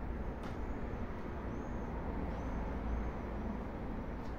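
Steady low rumble of city road traffic, with a few short high-pitched chirps between about one and three seconds in.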